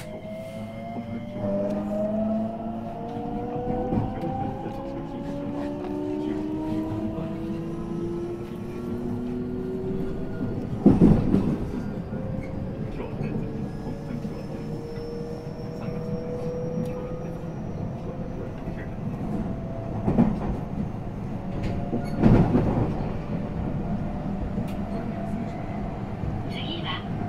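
JR West 225-0 series train's Toyo-built IGBT VVVF inverter and traction motors, whining in several parallel tones that climb in pitch as the train accelerates. The wheels give a few sharp clacks over rail joints or points, the loudest about eleven seconds in.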